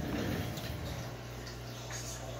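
Aquarium equipment running: a steady low electric hum from the air pump, with a faint, even wash of bubbling or trickling water.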